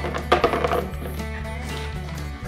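Stone chunks clattering into the bottom of a plastic flower pot, a few quick knocks in the first half-second, as the drainage layer is laid before the soil. Steady background music plays under it.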